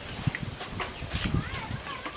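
Eating sounds: spoons clicking and scraping on ceramic plates and mouth sounds of chewing, heard as a series of short sharp clicks, with a brief voice near the end.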